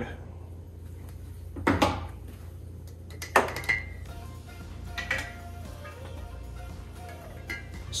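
Two sharp clinks of a plastic racking cane and siphon tubing knocking against glass cider carboys, about two seconds in and again about three and a half seconds in, over a steady low hum. From about four seconds in, faint background music with soft held notes plays underneath.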